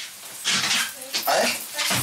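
Fabric rustling in two short bursts as a pair of trousers is handled and pulled on, with a brief questioning "A?" from a man partway through.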